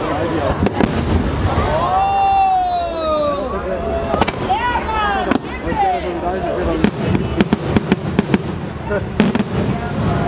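Aerial fireworks shells bursting, with a quick run of sharp bangs in the second half.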